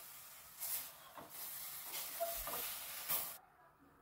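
Chicken pieces and spices cooking in a steel pot without oil, giving a soft, steady hiss, with a couple of brief knocks. The hiss cuts off suddenly shortly before the end.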